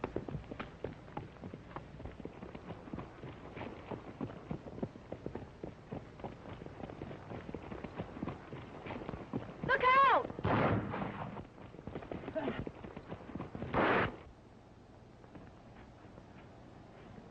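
Old film soundtrack of horses' hoofbeats clattering. Past the middle a brief falling cry is heard, then a burst of gunshots over about four seconds, loud and echoing.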